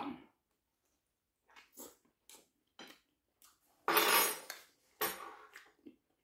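Metal spoon and dishes clattering on a wooden tabletop during a meal: a few faint clicks, then two louder clatters about four and five seconds in.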